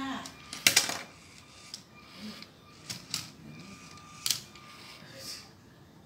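Plastic Lego mechanism clicking and clacking as the motorised sorting machine works: one loud clack under a second in, then several lighter clicks.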